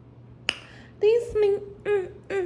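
A single sharp click about half a second in, then a woman's voice sounding short notes on nearly one pitch, repeated about twice a second.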